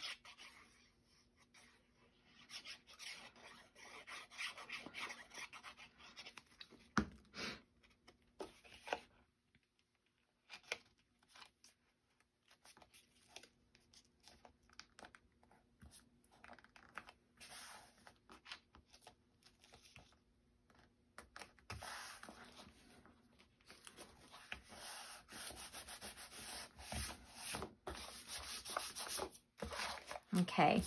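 Faint rustling and rubbing of paper and card being handled and smoothed flat by hand, with a few light taps about a third of the way in and a quieter stretch in the middle.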